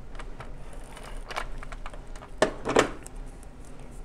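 Card stock and a taped paper strip being handled and repositioned by hand: scattered light clicks and taps, with two louder rustles about two and a half seconds in.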